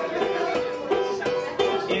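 Ukulele played in a short instrumental phrase, a run of plucked and strummed notes with no singing.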